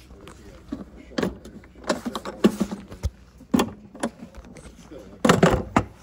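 Lid of an Apache 4800 hard plastic case being shut and its latches snapped closed: a run of plastic clunks and clicks, the loudest about five and a half seconds in.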